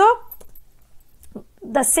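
A woman's speaking voice, broken by a pause of about a second and a half that holds only a couple of faint clicks.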